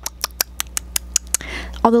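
A quick run of about ten small, sharp clicks made right at a handheld microphone, about six a second, stopping about a second and a half in. It shows how closely the mic picks up little sounds.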